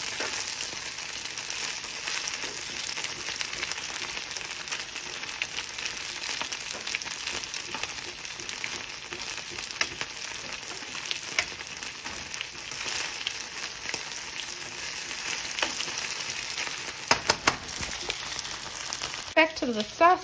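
Thin-sliced ribeye sizzling and crackling steadily as it fries in oil in a nonstick pan, the pieces being turned with metal tongs. A few sharp clicks come near the end.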